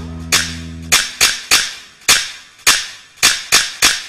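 Sharp percussion strikes in a music track, about nine of them at uneven spacing, each fading quickly. A held low chord cuts off about a second in.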